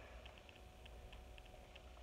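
Near silence: room tone with a faint low hum and faint, evenly spaced ticks, about four a second.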